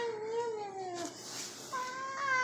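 Two long, wavering meows: the first lasts about a second and falls in pitch at its end, and the second begins near the end.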